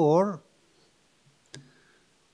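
The last syllable of a man's speech, then quiet room tone broken by a single sharp click about one and a half seconds in.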